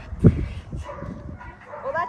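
A Bernese mountain dog gives one short, deep bark about a quarter second in. A woman starts speaking near the end.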